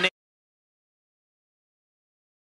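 Total silence: the game sound cuts off abruptly just after the start, and the audio is blank for the rest of the time.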